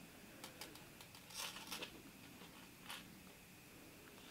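Very faint handling sounds: a few scattered small clicks and rustles of pliers and fingers working thin copper wire as it is bent into shape, with near silence between them.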